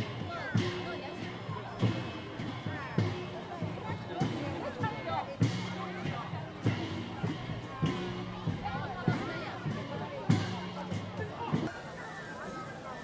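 Parade music from an approaching procession: a drum beat about every 1.2 seconds with low held notes between, under the chatter of spectators along the street.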